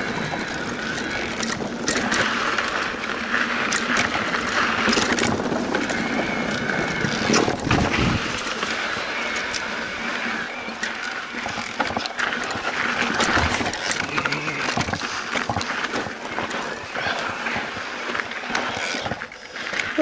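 Cannondale Habit Neo 4 electric mountain bike riding a bumpy dirt trail: tyres rumbling over dirt and rock with the bike clattering and knocking over bumps.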